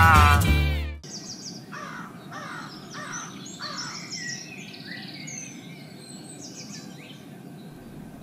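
Music with a deep bass cuts off abruptly about a second in, leaving quiet outdoor ambience with birds calling: four falling calls in quick succession, then scattered higher chirps.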